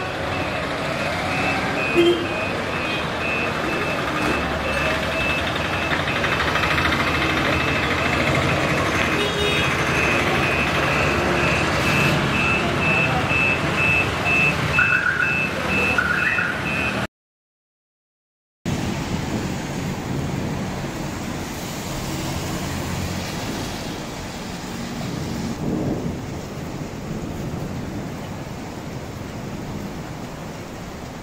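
Busy town street traffic and crowd noise, with a vehicle's reversing beeper sounding about twice a second and a horn tooting about two seconds in. After a short gap it turns to a steady, even hiss of rain on a wet, empty road.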